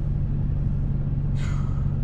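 Car engine idling, a steady low hum heard from inside the cabin, with a short breathy exhale about one and a half seconds in.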